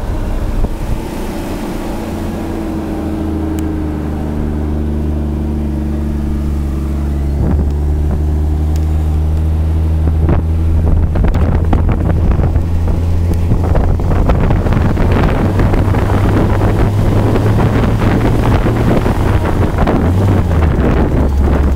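Humber Pig armoured truck's Rolls-Royce B60 straight-six petrol engine running under way, heard from the open top hatch. A steady low engine drone, growing louder about halfway through as wind on the microphone and running noise build up.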